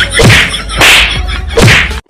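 Punch sound effects for a staged fight: three sharp, whip-like smacks, each with a falling low thud, less than a second apart.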